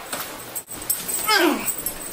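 A loud cry about a second and a half in, sliding steeply down from high to low pitch over about half a second.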